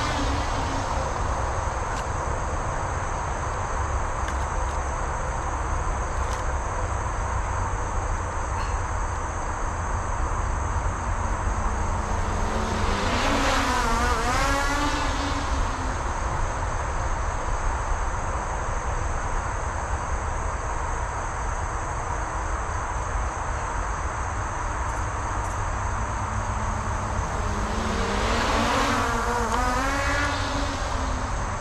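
Skydio 2 quadcopter's propellers buzzing as it flies a repeating cable-cam loop, over a steady low rumble. The buzz swells and bends in pitch each time the drone sweeps close and back out: near the start, about halfway through, and at the end.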